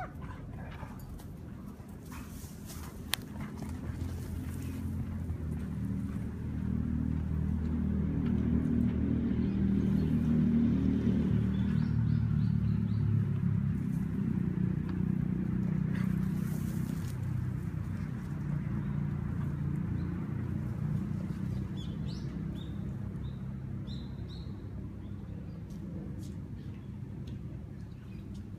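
A low engine hum swells over several seconds, is loudest around the middle, then slowly fades away, as of a vehicle or aircraft passing by. A few faint high chirps sound briefly near the middle and again near the end.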